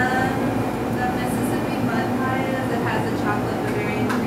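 Indistinct background chatter of several voices over a steady low hum.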